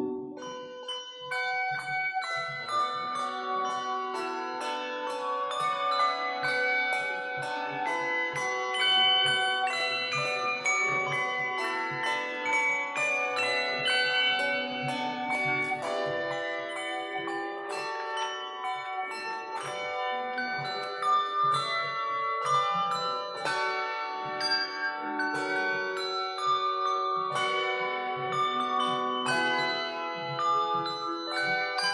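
A handbell choir playing a piece of music: many bells struck in quick succession and ringing on together in chords under a moving melody.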